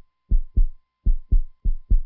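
Heartbeat sound effect: pairs of deep thuds, a little over one pair a second, in an even lub-dub rhythm.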